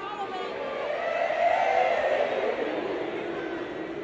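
Large concert audience vocalizing together as a voice warm-up, many voices blended into one wavering, sustained sound that swells about a second and a half in and then fades.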